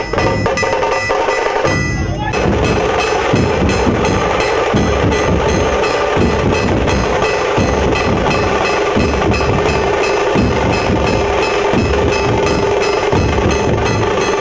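A group of large barrel dhol drums beaten together in a loud, fast, dense rhythm.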